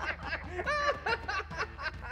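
A woman laughing, a string of short chuckles.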